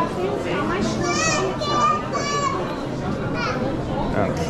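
Chatter of passers-by in a busy terminal hall, with one high-pitched voice rising and falling several times from about one to two and a half seconds in.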